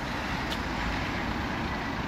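Steady road traffic noise from a queue of lorries and cars with engines running, a low even rumble.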